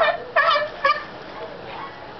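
Sea lion barking three times in quick succession, short honking calls in the first second.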